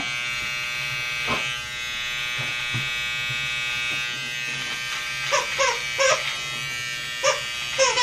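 Cordless electric beard trimmer buzzing steadily as it cuts through beard hair, with a brief dip in its sound a little under two seconds in. A few short bursts of voice come in the second half.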